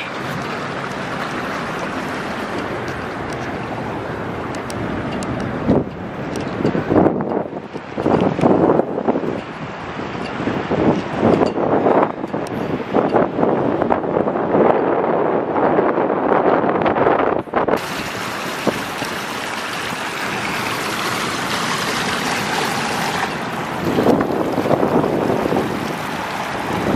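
Wind buffeting the microphone, with ocean surf rushing behind it. The wind is uneven and strongest through the middle stretch.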